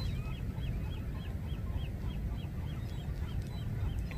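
A bird calling a long run of short, repeated, upslurred notes, about three a second, over a low steady rumble.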